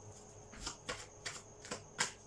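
A tarot deck being shuffled by hand: a faint run of quick, light card clicks, about five a second, starting about half a second in.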